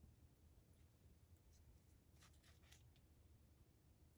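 Near silence: room tone, with a few faint rustles a little past the middle as a letter cutout is placed on a pocket chart.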